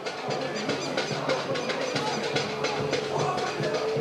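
Football supporters drumming in the stands, a steady run of drumbeats, with a long held note in the last second or so.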